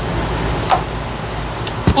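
Hands pressing and smoothing a stick-on emblem onto the steel drawer front of a rolling tool cart: two light clicks, one about a third of the way in and a sharper one near the end, over a steady noisy shop background.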